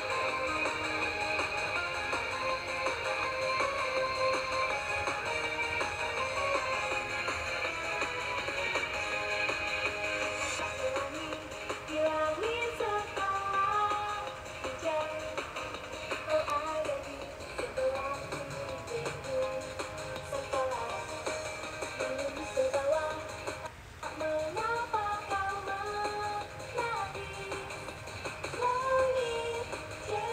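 A pop song playing: an instrumental stretch, then a sung melody coming in about twelve seconds in.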